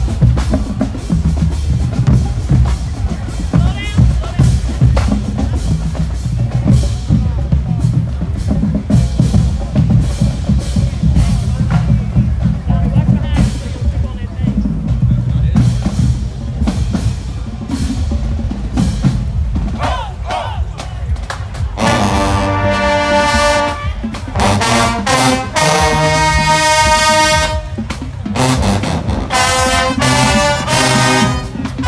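Marching band drumline playing a cadence of bass and snare drums. About two-thirds of the way through, the brass section comes in with loud held chords, broken by short rests.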